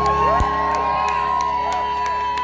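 A live band's last chord rings out, its low notes stopping about half a second in, while the audience cheers and whoops with a long held whistle-like tone above.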